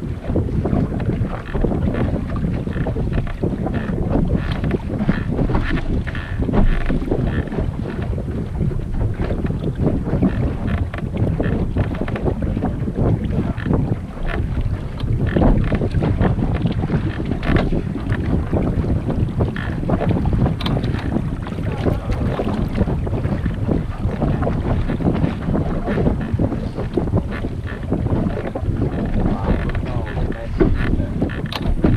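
Wind rumbling and buffeting on the microphone of a small sailboat under sail, with water rushing and splashing along the hull.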